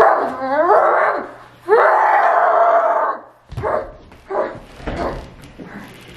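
Two dog-like howls: the first wavers up and down for about a second, the second is held more steadily for about a second and a half. Quieter, broken growl-like sounds follow.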